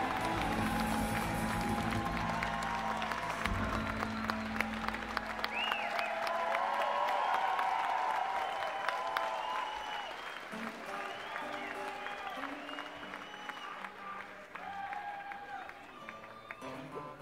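A live band's final chord rings out and dies away over the first five seconds or so, under a concert crowd's applause, cheers and whistles. The applause then thins and slowly fades.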